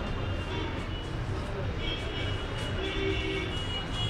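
Steady background street noise: a low traffic rumble with indistinct voices, and a thin high tone held from about halfway through.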